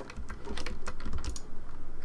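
Computer keyboard keys and mouse buttons clicking at an irregular pace while shortcuts are entered in 3D software.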